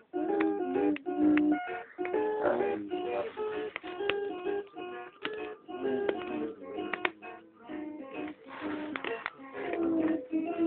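Electronic children's musical learning toy playing tinny synthesized notes and short tunes. The melody keeps changing and breaking off, with clicks throughout.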